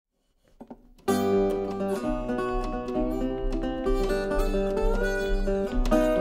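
Fingerpicked metal-bodied resonator guitar starting about a second in: a steady alternating bass under a picked melody, with a few notes bending upward.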